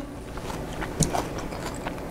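Quiet room tone with a few faint, soft clicks of someone chewing a mouthful of food. The clearest click comes about a second in.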